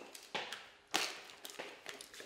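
A few short sharp taps and clicks of a snack can being handled, the two clearest about half a second apart, with fainter clicks near the end.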